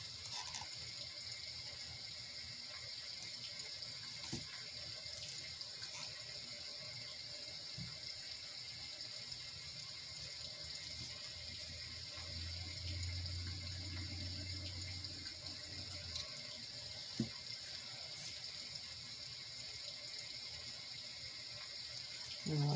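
Steady recorded rain sound from a sound machine: an even hiss of falling water. A couple of light clicks of plastic cups being handled are heard, and a low hum for about four seconds in the middle.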